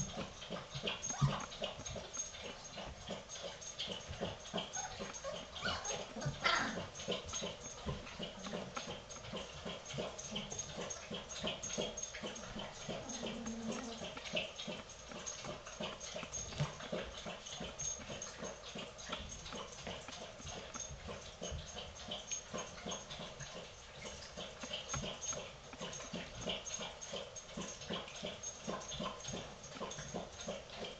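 A litter of three-week-old golden retriever puppies moving about on bedding: many small scrabbling and scratching sounds throughout, with occasional brief whimpers and squeaks.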